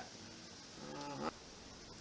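Quiet room tone, with a man's faint wordless hum, a short "mm", in the middle while he looks something up.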